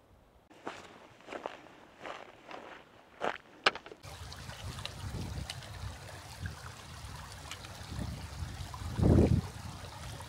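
A few scattered knocks and scuffs, then from about four seconds in the steady rush of a shallow river running over stones, with a brief louder low sound about nine seconds in.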